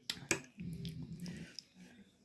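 A metal fork clicking twice against a glass plate near the start, followed by a faint low hum.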